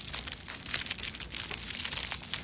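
Clear plastic plant sleeve crinkling and crackling as it is handled and pulled off a potted plant, a dense run of quick crackles.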